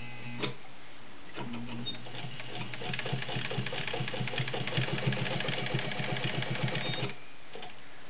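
Fleetwood 690 all-metal zigzag sewing machine, with its one-amp motor, stitching through ten layers of cotton. A brief whir and a click near the start give way to the motor picking up again, then a steady, rapid stitching rhythm runs for about four and a half seconds before stopping about a second before the end.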